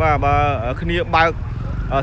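A person talking over the engine of a small motorcycle riding past close by, its engine a steady low rumble under the voice.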